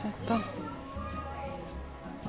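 Brief, indistinct voices with no clear words, over steady background music.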